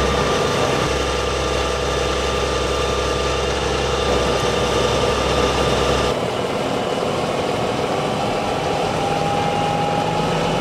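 A fire engine running steadily with its pump feeding the hoses: a constant drone with a steady whine. The low part of the drone drops away about six seconds in.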